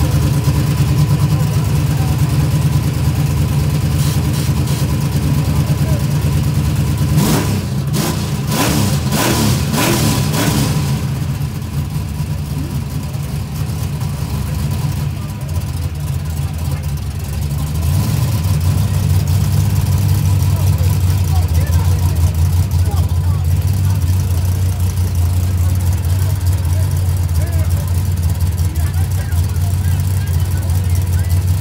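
A drag car's engine idling loudly with a lumpy, steady low note. Between about 7 and 11 seconds it gives a quick run of about six sharp revs, then settles back, dropping to a lower idle about 18 seconds in.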